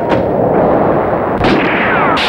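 Loud, dense horror-film sound effects: a rumbling roar of crashes, with a sharp hit just after the start and another about a second and a half in.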